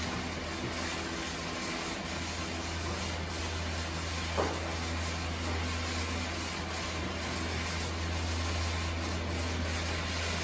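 Chicken and zucchini strips frying in a nonstick pan, a steady hiss over a constant low hum, with one brief clink about four and a half seconds in.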